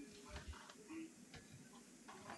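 Near silence: room tone with a few faint, short clicks.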